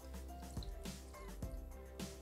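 Soft background music with a steady beat.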